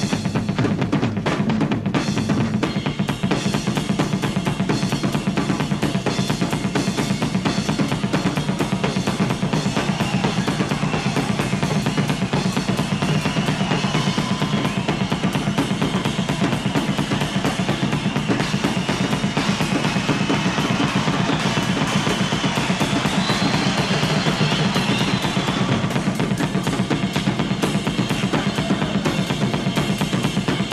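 Rock drum solo on a full kit: dense, rapid rolls around the toms with bass drum, played without a pause.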